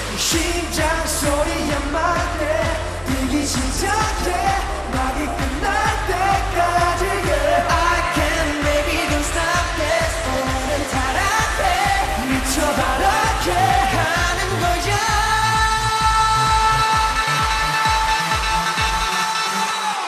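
K-pop dance track performed live with male vocals over a pulsing bass beat. About fifteen seconds in, the singing gives way to a long held synth chord that runs until the beat stops just before the end.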